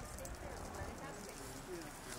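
Mountain goat's hooves clicking on asphalt as it walks, under faint background voices.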